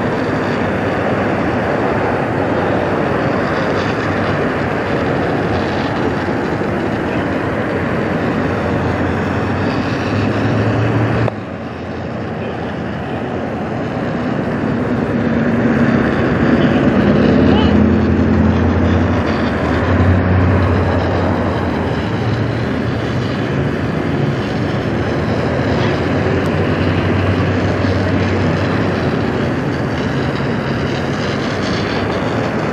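Fire truck engine running steadily under load to drive the pump feeding an aerial ladder's water stream: a constant loud rush. A sudden break about eleven seconds in is followed by a low engine hum that grows stronger.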